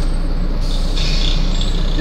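Cabin noise inside a Volvo ALX400 double-decker bus on the move: a steady low rumble of the diesel engine and running gear, with a hiss joining about half a second in.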